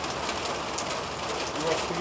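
Steady hiss of light rain on wet pavement, with a faint click about a second in and a voice starting near the end.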